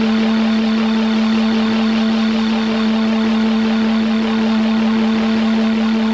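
Ambient electronic music: a steady synthesizer drone held on one low note under a hissing, fluttering noise layer, with no beat.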